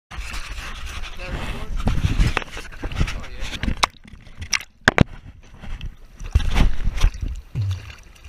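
Choppy surface water sloshing and splashing against a camera housing held at the waterline, with low rumbling surges as waves wash over it and a couple of sharp clicks about halfway through.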